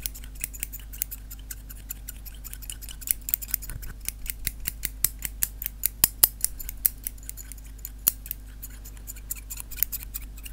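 Close-miked ASMR trigger sounds: rapid, irregular crisp clicks, several a second, growing thicker and louder in the middle, over a low steady hum.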